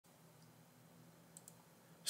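Near silence, room tone with two faint clicks about a second and a half in.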